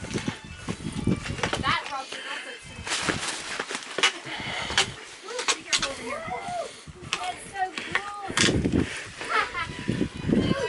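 Indistinct voices of people talking, with scattered sharp clicks and scuffs mixed in.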